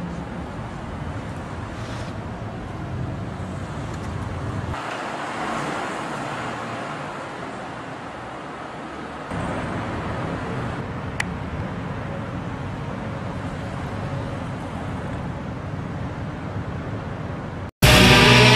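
Street traffic ambience: a steady wash of car and road noise from passing vehicles, with a single short tick about eleven seconds in.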